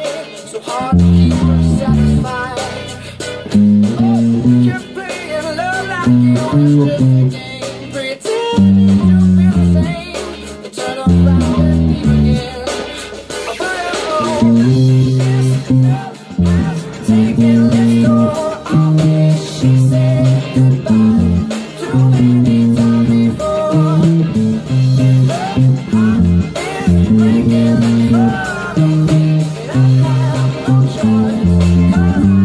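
Electric bass played fingerstyle: a choppy, syncopated line of short low notes with brief gaps, over a pop-rock backing track with a singing voice.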